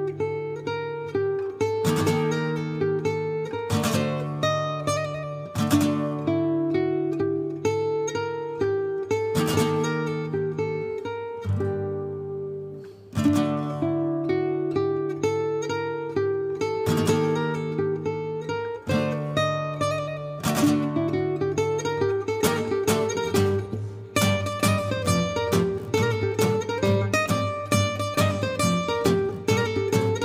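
Two acoustic guitars, a steel-string gypsy jazz guitar and a nylon-string classical guitar, playing a lively Breton gavotte tune reworked in gypsy jazz style, with plucked chords and melody on a steady beat. About 24 seconds in, the playing turns busier.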